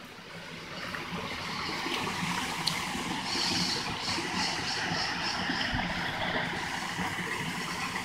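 Rushing river water: a steady, even noise that swells about a second in and then holds.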